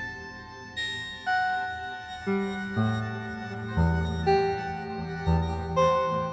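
Ambient electronic music from a VCV Rack virtual modular synth patch. Piano-like synthesized notes sound every half second to a second, each fading away, over a few sustained low bass notes that change now and then.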